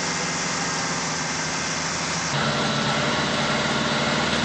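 Vehicle engines idling under a steady hiss. About two and a half seconds in the sound changes at once and a deeper, steadier engine hum comes in.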